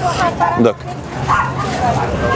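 A single cough among people's voices.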